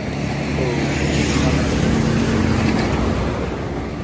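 A motor vehicle running close by, its engine hum and road noise swelling over the first second, holding, then easing off toward the end, like a vehicle passing on the road.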